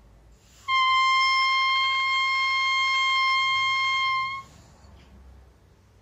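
An oboe reed blown on its own, without the instrument, sounding a single high, steady tone held for nearly four seconds: the reed's 'crow', blown with diaphragm support to practise the embouchure. It starts just under a second in and cuts off cleanly.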